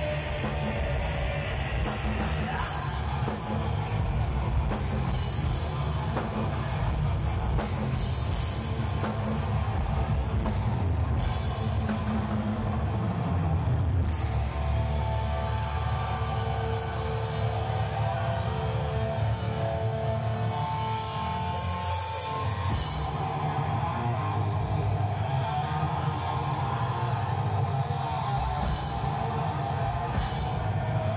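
Heavy metal band playing live: distorted electric guitars, bass and drum kit, recorded as room sound. A higher melodic guitar line stands out about halfway through.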